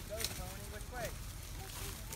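Faint voices in the background, with wind rumbling on the microphone and a couple of brief rustles.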